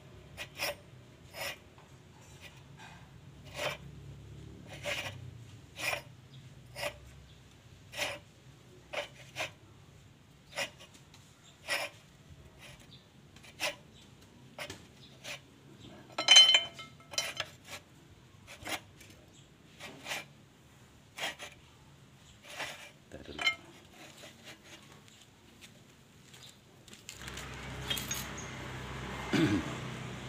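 Light metallic clicks, about one or two a second, as the notched bearing adjuster nut is turned by hand into its bearing cap on a Toyota Dyna 130 HT truck differential. There is one louder ringing clink about halfway through, and a rustling noise near the end.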